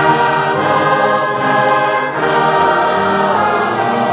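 A choir singing long, held chords that change slowly.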